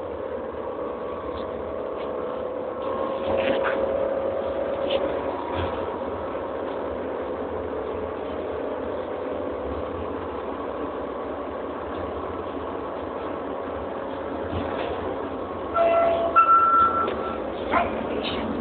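Cabin noise inside a moving passenger vehicle: a steady running rumble with a motor whine that drifts slightly in pitch. A few short, louder sounds with a clear pitch come near the end.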